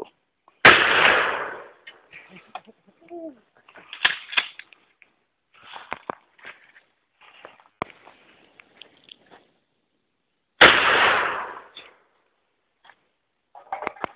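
Two shots from a Mossberg 500 pump-action shotgun, about ten seconds apart, each a sharp report followed by about a second of echo. Fainter clicks come between the shots.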